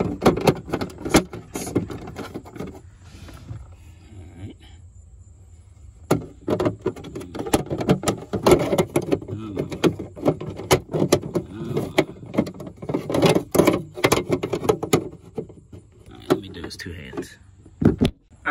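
Repeated sharp plastic clicks and knocks as the Toyota Tundra's cabin air filter access cover is pushed and worked into its slot behind the glovebox. It will not seat because it is being pushed too hard. There is a quieter stretch early on and an indistinct voice through the middle.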